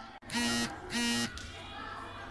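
Two short, loud buzzes of steady pitch, each about a third of a second long and about half a second apart, over low background chatter in the hall.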